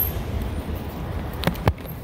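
Steady low rumble of a motor vehicle on a city street, with two sharp knocks close together about a second and a half in.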